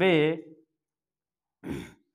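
A man's voice trailing off at the end of a word, then after a pause a short, audible breath near the end.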